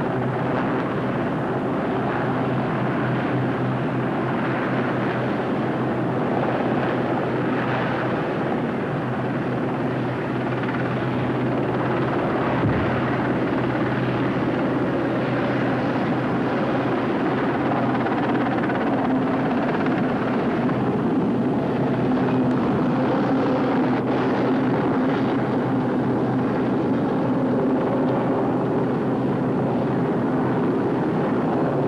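Military helicopters hovering close by: a steady, continuous rotor and engine noise with a constant low hum.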